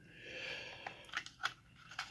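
A breath close to the microphone, then a few small, sharp metal clicks as a pick works at the brass cylinder of a disassembled Master Lock padlock.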